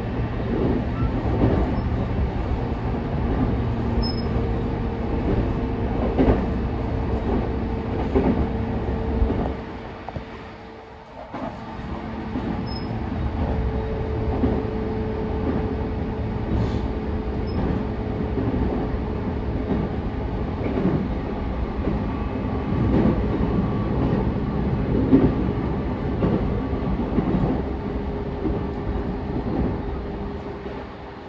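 JR East E233-5000 series electric train running at speed, heard from inside a passenger car: a steady rumble of wheels on rail with small knocks and a steady hum. The sound dips briefly about ten seconds in, then resumes.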